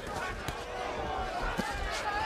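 Gloved punches thudding as two boxers trade at close range: a few sharp thuds, one about half a second in and more near the end, over arena crowd noise and shouting voices.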